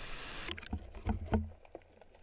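Sea water splashing at a camera held at the surface, which goes under about half a second in: the sound turns muffled, with low thuds and short bubbling clicks of water moving around it.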